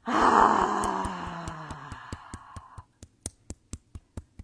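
A woman's long voiced sigh, loud at first, then falling in pitch and fading out over nearly three seconds. Under it, a steady rhythm of fist taps on her chest, about four a second, goes on after the sigh ends.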